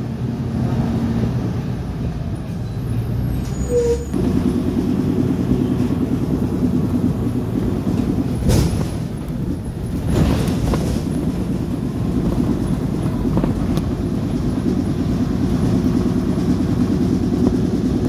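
City bus heard from inside, its diesel engine and drivetrain running with a steady drone and rattle. The engine note steps up about four seconds in as it pulls harder. Two short bursts of noise come around the middle. To the rider the bus sounds as if its engine is about to give out.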